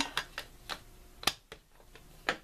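A plastic ink pad case and other small craft tools being handled and set down on a cutting mat: about five light clicks and taps, the sharpest about a second and a quarter in.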